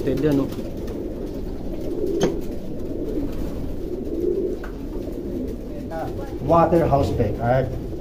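A loft full of domestic racing pigeons cooing, a continuous overlapping chorus of low coos. A man's voice comes in near the end.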